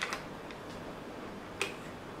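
Short sharp clicks of small objects being handled by hand: a light tick just after the start and a sharper click about one and a half seconds in, over quiet room hiss.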